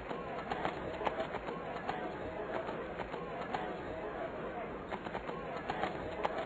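Murmur of a large outdoor crowd of spectators talking among themselves, many overlapping voices with no single voice standing out, and scattered small clicks and knocks.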